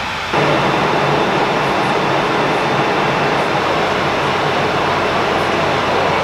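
Loud, steady airliner cabin noise in flight, the hum of the engines under the rush of air, cutting in suddenly just after the start.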